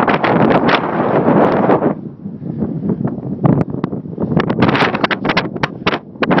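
Wind buffeting the microphone in gusts, loudest in the first two seconds, then in short, sharp bursts of rumble.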